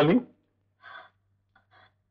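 A crying woman's two faint, short sobbing gasps, one about a second in and one near the end.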